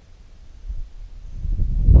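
Wind buffeting the camera's microphone: a low, uneven rumble that swells from about half a second in and grows loud near the end.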